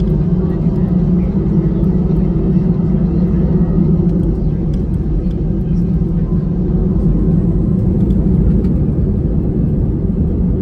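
Steady low rumble of an Airbus A319 taxiing, heard from inside the cabin: engine noise and the rolling of the wheels, with a few faint ticks and knocks.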